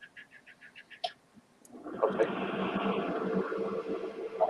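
Light clicks, about six a second, for the first second, then a room heater coming on about two seconds in: a steady rushing noise with a low hum, a little bit loud.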